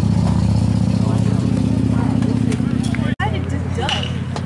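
Steady low drone of an idling engine under indistinct crowd chatter; the drone drops a little in level after about three seconds.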